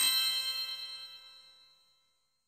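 A bright, bell-like chime from a short mallet-percussion music sting rings out and fades away over about two seconds.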